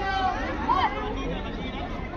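Overlapping chatter of spectators' and players' voices, with one louder call a little under a second in.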